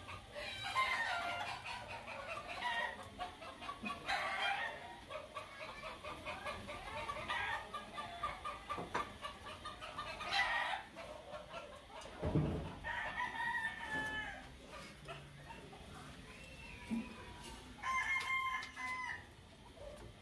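Roosters crowing repeatedly, about six crows spread over the span, with a dull bump about twelve seconds in.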